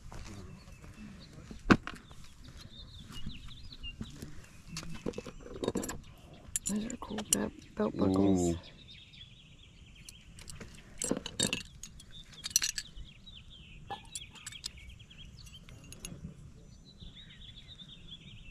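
Small metal clasps and belt buckles clinking against each other as they are handled, a scattered series of short sharp clicks and jingles.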